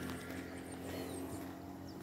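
Quiet outdoor background: a faint steady low hum with a few faint, short high chirps.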